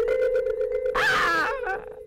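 Film soundtrack: a steady, eerie held tone, with a single harsh caw-like cry breaking in about a second in and lasting well under a second.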